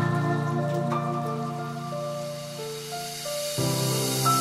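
Background electronic music: sustained synth chords that change a few times, with a rising hiss building near the end.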